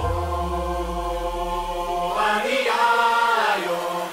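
House music breakdown: the drums drop out and a sustained chord holds over a deep, fading bass note, with a held choir-like vocal line coming in about two seconds in.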